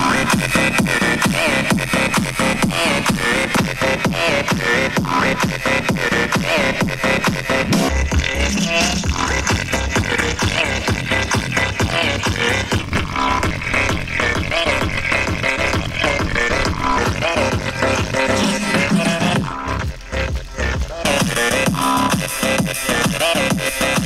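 Electronic dance music with a heavy, steady beat, played loud through a JBL Flip 5 Bluetooth speaker lying in shallow water. The beat thins out briefly near the end.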